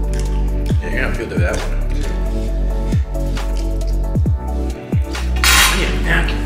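Background music with a deep held bass and repeated short falling low hits, like an 808 kick. A brief hissy burst comes near the end.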